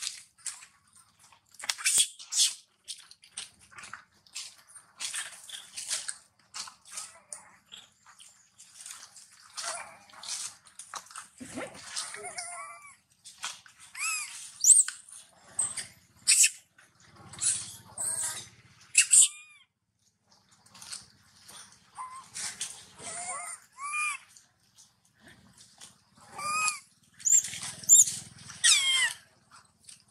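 Young long-tailed macaques giving high, squeaky calls that bend up and down in pitch, coming in quick clusters through the second half. Crackly rustling runs through the first half.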